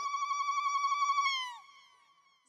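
A single high, held musical note with a slight waver, from traditional Amazigh music; it slides down and fades out about a second and a half in.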